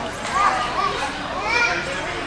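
Background chatter of spectators in a large hall, with a few short, high-pitched voice calls about half a second in and again near the end.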